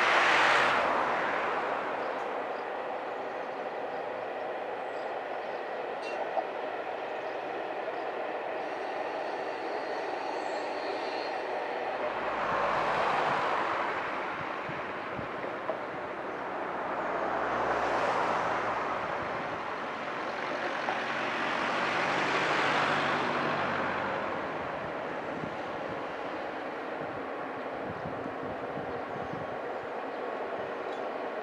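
Locomotive-hauled passenger trains rolling over a concrete railway bridge, heard at a distance: a steady rail noise that is loudest at the start and later swells and fades several times.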